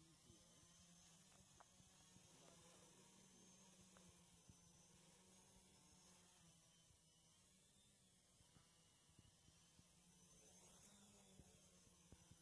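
Near silence: a faint steady hiss and low hum, with a faint wavering high whine from the distant X525 quadcopter's motors.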